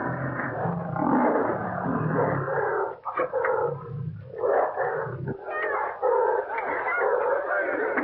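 Caged big cats growling and roaring almost without a break, the deepest rumble stopping about five seconds in, heard on an old film soundtrack with no high treble.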